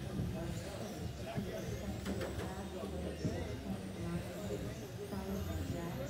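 Indistinct voices in a large hall over a steady low hum. The faint high whine of electric RC touring cars rises and falls as they run past, about two seconds in and again near the end.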